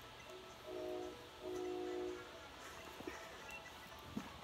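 A child humming two short, steady notes, the second held a little longer than the first.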